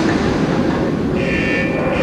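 Wind tunnel running: a deep, steady rumble of the big fan with air rushing, and a brief higher whine a little past halfway.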